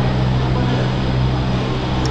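Steady low mechanical hum from an aerial cable-car (gondola) station's machinery, an even drone with a deep hum beneath it.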